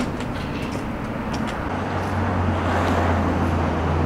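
Street traffic noise, with a passing vehicle's low engine rumble growing louder in the second half over a steady hiss of road noise.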